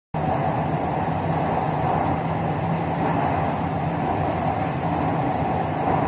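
Metro train running through a tunnel: a steady rushing noise with a low hum underneath, holding level throughout.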